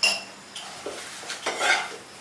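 Metal spatula and frying pan clinking on a gas stove while a roti cooks: a sharp, ringing clink at the start, then several more knocks and scrapes, loudest about one and a half seconds in.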